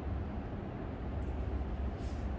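Steady low rumble with an even hiss over it and no distinct events: background room noise.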